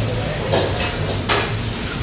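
A small plastic soy sauce packet handled and crinkled, with short scratchy sounds about half a second in and again just over a second in, over a steady low hum.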